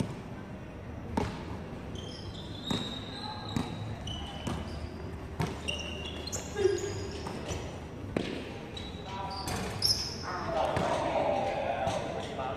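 Basketball bouncing on a hard court at irregular intervals of a second or two, with short high squeaks of sneakers. Players' voices call out across the court, loudest near the end.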